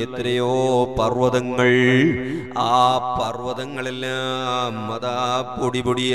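A man's voice chanting in a slow, melodic recitation, sliding between notes and holding one long note through the middle, in the style of Quranic recitation. A steady low hum runs underneath.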